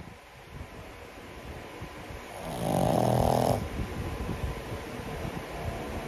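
A young pug snoring in its sleep: quieter snoring breaths throughout, with one long, loud snore about halfway through.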